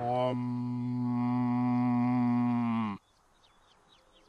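A deep male voice holds a long, low meditative chant for about three seconds, sagging slightly in pitch before it cuts off abruptly; the audio is played backwards. Then a few faint, short, high chirps sound over near silence.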